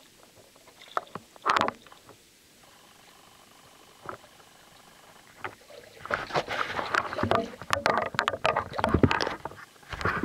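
Shallow water splashing and sloshing around booted feet wading through it. There is one short splash about a second and a half in, then a busier, louder run of splashes in the second half.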